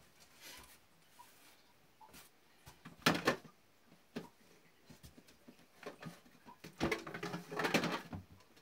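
Rustling and knocking of items being handled and packed inside a corrugated cardboard box, in short irregular bursts. The louder bursts come about three seconds in and again near the end.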